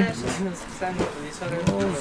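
Speech only: a man speaking in short, halting bits with brief pauses between them.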